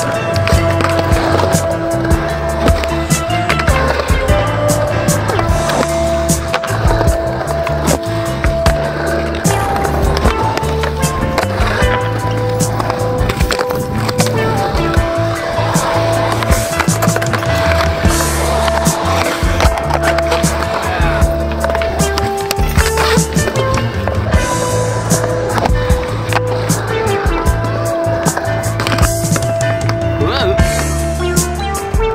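Skateboard wheels rolling on concrete, with the clack of boards popping and landing, mixed with background music that has a stepped bass line and held notes.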